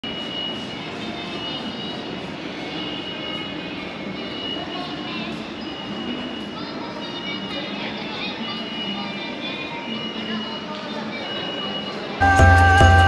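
Shopping-mall atrium ambience: a steady hubbub of distant voices and footfall in a large echoing hall, with faint background music and a high tone that sounds on and off every second or so.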